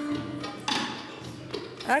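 Studio band's live accompaniment trailing off at the end of a Turkish folk song: a held note fading out, then a brief hiss about two-thirds of a second in. A voice starts just at the end.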